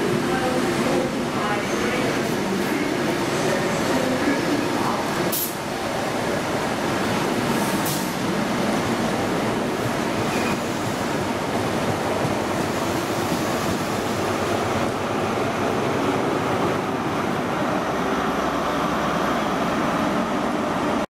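InterCity 125 (HST) train passing along the platform: a steady rumble of the coaches on the track, with two brief sharp sounds about five and eight seconds in. Its diesel power car passes close near the end.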